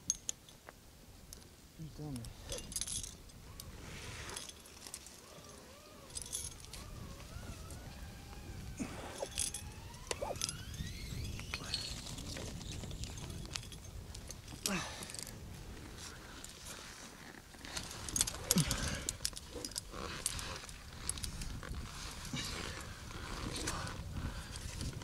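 Metal climbing hardware, carabiners and quickdraws on a rope, clinking and jangling now and then as a climber works up the pitch. A faint wavering tone rises in pitch in the middle of the stretch.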